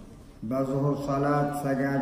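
A man's voice chanting in the drawn-out, level-pitched style of Quranic recitation during prayer. It starts about half a second in, with long held notes.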